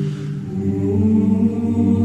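Background music of slow, held choir-like chords with no words; the chord changes about half a second in.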